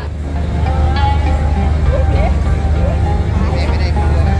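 Steady low engine rumble, with people talking faintly behind it.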